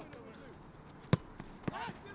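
A football kicked hard: one sharp thud about a second in, then a lighter knock and a player's shout near the end.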